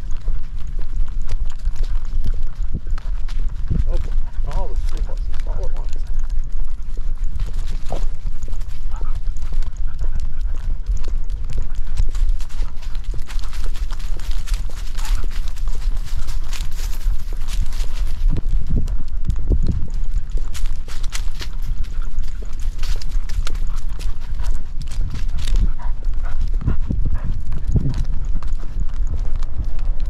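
A walking dog heard through a camera strapped to its harness: a steady run of knocks, scuffs and low rumble as the mount jostles with every stride, over the dog's footfalls.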